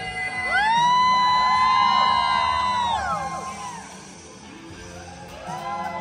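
A man singing karaoke into a microphone over backing music: he slides up into a long high note, holds it for about two and a half seconds, then lets it fall away. A shorter, quieter note follows near the end.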